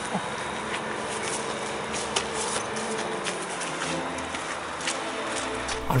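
A Fiat 500 idling, a steady low engine sound, with scattered light rustles and clicks of someone moving on grass and gravel.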